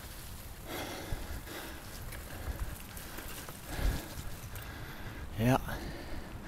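A person walking outdoors with a handheld camera: soft breathing, footsteps and handling noise, with a low thump about four seconds in. A short spoken "yeah" comes near the end.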